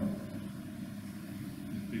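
Room tone in a pause: a steady low electrical hum with an even hiss.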